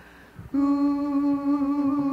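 A voice humming one long, steady held note in the backing music, coming in about half a second in after a brief hush.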